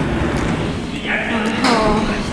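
Speech: a woman's voice starts about a second in, over a low, steady background rumble.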